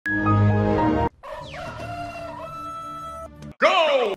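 Intro sound effects. A loud, short music chord lasts about a second. It is followed by a drawn-out call that falls in pitch and then holds for about two seconds. Near the end comes a loud swooping sound.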